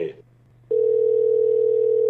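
Telephone dial tone: one steady tone on the phone line, starting under a second in and holding without a break, heard after the previous call has ended and before the number is redialed.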